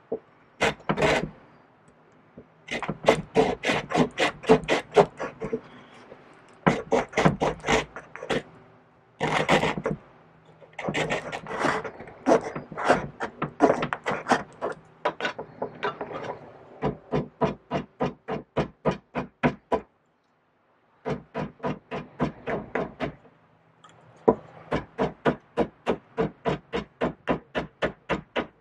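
Small hand saw cutting into a block of green wood, in runs of quick rasping strokes, about three or four a second, with short pauses between runs.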